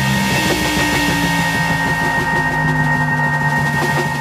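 Live jazz-fusion trio of keyboards, bass and drums playing: held low notes and a steady high tone over a dense, rapid rhythmic texture.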